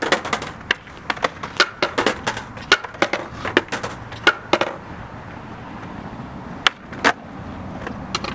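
Skateboard clacking on concrete: a rapid run of sharp knocks as the board is flipped and stamped on, then a pause and two more knocks near the end.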